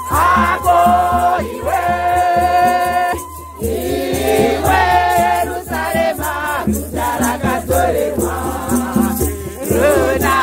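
A crowd of women singing a hymn together, with hosho gourd rattles shaking a steady beat under the voices. There is a brief break between phrases a few seconds in.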